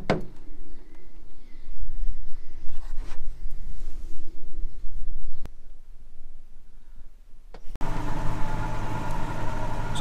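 Massey Ferguson 5712 SL tractor's four-cylinder diesel engine running: at first a low rumble, then about eight seconds in it changes abruptly to a steady, fuller engine drone.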